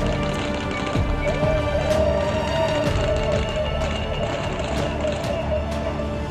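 Dramatic background music holding one sustained note, with a few sharp cracks scattered through it.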